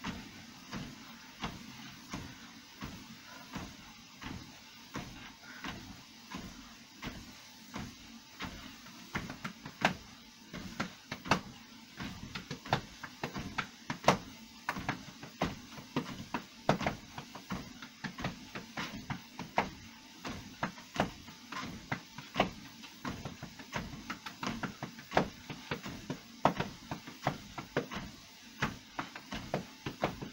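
Footfalls thudding on a Fitnord treadmill's moving belt at a steady walking pace, about one and a half steps a second, over a low, continuous hum from the machine.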